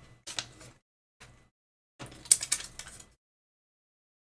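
Paper and plastic craft materials being handled on a tabletop, rustling and crinkling in three short bursts: one at the start, a brief one about a second in, and the loudest and longest from about two to three seconds in.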